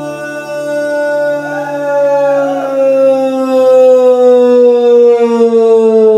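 Audience singing along, holding one long note that slides slowly down in pitch.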